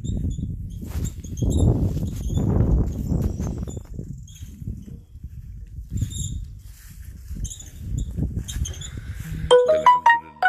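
Wind rumbling irregularly on a phone microphone outdoors, with small birds chirping faintly. Near the end comes a short electronic chime of a few stepped notes.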